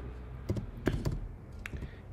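Keystrokes on a computer keyboard: about five separate key taps, typing a line of code.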